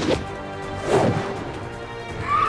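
Orchestral action-scene soundtrack music from an animated episode, with one sharp crash-like impact about a second in.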